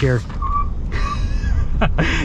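Ford F-150 Lightning's dual electric motors under full-throttle acceleration, heard from inside the cab: a deep road rumble with a brief high whine, and a hiss over the second half as the tires briefly break loose.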